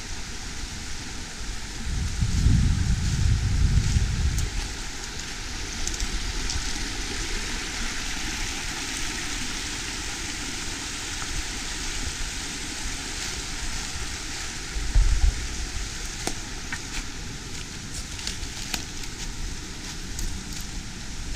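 Small rocky creek rushing over rapids, a steady even hiss of water. Low buffeting of wind on the microphone comes in twice, once near the start and briefly about three-quarters of the way through.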